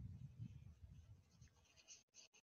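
Faint strokes of a watercolour paintbrush on paper, over a faint low rumble.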